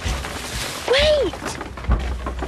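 A child's voice calling out "Wait!" once, about a second in, over a steady background hiss.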